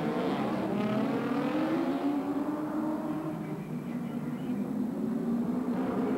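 Racing touring car engines on a wet street circuit: an engine note climbing over the first two seconds as a car accelerates, then holding steady at high revs.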